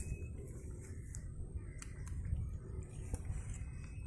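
Quiet outdoor background: a low, steady rumble with a few faint clicks.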